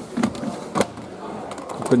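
Two clicks about a second apart from a front-loading washing machine's plastic detergent drawer being handled, over low background voices.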